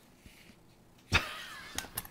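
Quiet at first, then about a second in a click followed by a short scraping, rattling slide of a Festool 3 m tape measure's steel blade running through its case.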